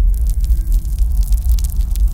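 Deep rumbling sound effect with dense crackling over it.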